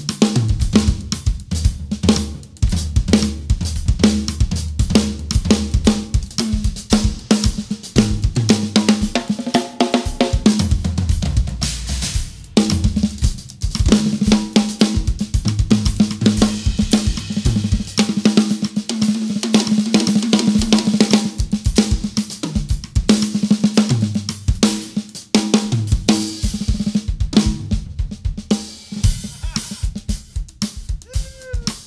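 Two acoustic drum kits played fast and hard: snare, bass drum, hi-hats and cymbal crashes, with repeated tom fills stepping down in pitch. The drummers trade phrases back and forth.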